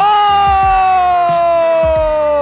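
Children cheering "woo" in one loud, long call that slides steadily down in pitch, over background music.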